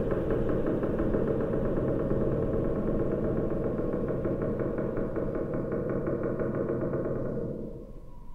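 A steady, engine-like mechanical running sound with a fast, even pulse of roughly ten beats a second. It fades out near the end.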